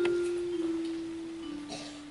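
Soft piano music: a note struck at the start rings on as a pure, bell-like tone that slowly fades, moving down in pitch by small steps twice.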